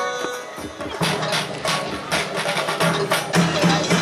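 Background music; a percussive beat comes in about a second in and repeats evenly.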